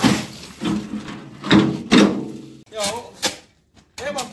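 A man's voice in several short, loud grunts and exclamations of effort while pushing a loaded wheelbarrow.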